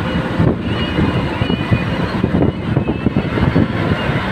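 Bus engine and road noise heard from inside the cabin while the bus is driving, a loud, steady low rumble.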